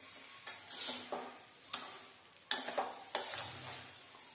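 A steel spoon stirring steamed Indian gooseberries (amla) and sugar in a stainless steel kadhai, as the sugar is mixed into the still-hot fruit to melt. Irregular scraping strokes across the pan, with several sharp clinks of spoon on metal.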